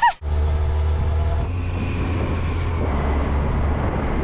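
Yamaha Fazer 800 motorcycle under way at a steady speed: the inline-four engine runs evenly beneath a continuous low wind and road rumble on the bike-mounted camera's microphone.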